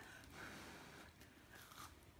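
Near silence with faint chewing of a freshly fried akara (black-eyed-pea fritter), a few soft crunches from the crisp crust.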